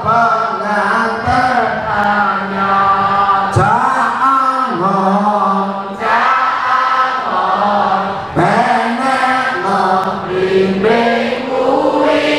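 Sholawat, devotional Arabic praise of the Prophet Muhammad, chanted in long, held, gliding notes by a voice on a microphone.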